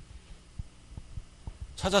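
Soft, low thumps of handling noise on a handheld microphone, over a faint steady hum. A man starts speaking near the end.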